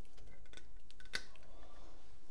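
A few sharp clicks and ticks, the loudest about a second in, over a low steady hum.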